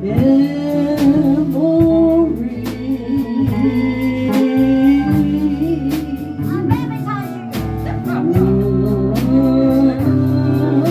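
A woman singing held notes with vibrato into a microphone over a live band of guitar and drums, the drums keeping a steady beat.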